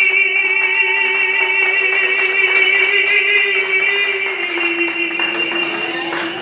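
Live salsa band music: a long chord held for several seconds over percussion hits, shifting slightly lower about four and a half seconds in, the sustained ending of the song.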